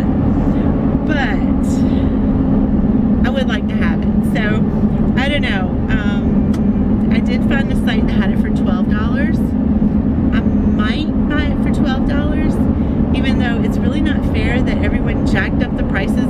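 A woman talking over the steady drone and road noise inside a moving car's cabin.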